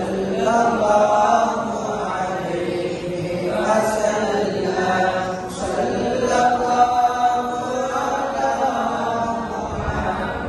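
A man chanting a devotional recitation into a microphone, in long, melodic held phrases with short breaks between them.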